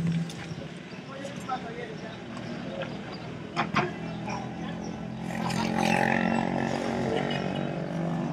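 A vehicle engine running steadily, growing louder about five seconds in, under indistinct background voices.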